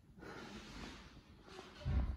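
A man breathing out hard through his nose with effort while holding a hip bridge, with a low thump near the end.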